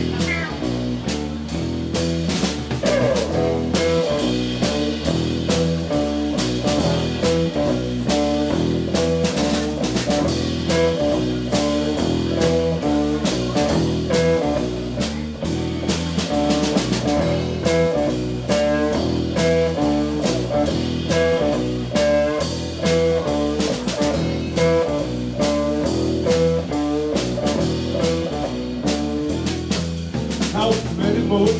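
A live band playing electric guitars and bass over a drum kit, with a steady beat.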